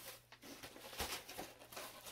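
Faint rustling and handling sounds of items being moved about while rummaging through a mailed package, with a soft low thump about a second in.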